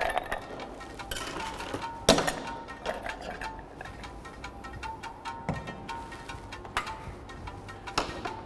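Ice cubes clinking against a copa glass as it is filled with ice to chill it. There is one sharp clink about two seconds in and a few lighter ones later, over soft background music.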